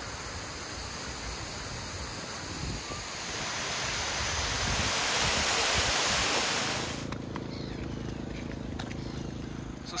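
Water rushing and splashing through the gaps in wooden canal lock gates. It is a steady rush that grows louder about three seconds in and cuts off abruptly about seven seconds in, leaving a quieter low outdoor background.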